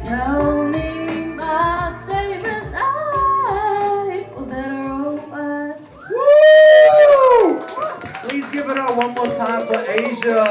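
A female vocalist singing live into a hand mic over a hip-hop backing beat with heavy bass, through a small bar's PA. The beat stops about six seconds in. A loud drawn-out whoop that rises and falls follows, then clapping and voices from the small crowd as the song ends.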